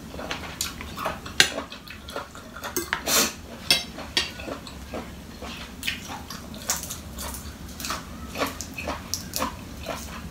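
Close-up eating sounds: wet chewing, lip smacks and irregular crisp clicks and crackles as a spicy sweet-snail salad is eaten, with lettuce leaves handled and torn.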